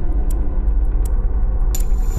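Low, steady rumble of a car engine as the car approaches slowly, with a soft hiss coming in near the end.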